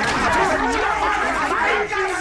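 Many men's voices speaking over one another at once, a dense, steady jumble of overlapping speech in which no single voice stands out.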